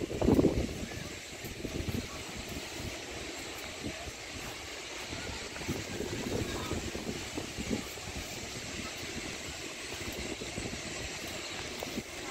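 Wind buffeting the microphone in irregular low rumbles over a steady background hiss of open-air ambience, with a louder gust-like burst in the first second.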